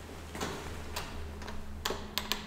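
Light clicks and taps about half a second apart, the sharpest near the end as the elevator's landing call button is pressed, over a low steady hum.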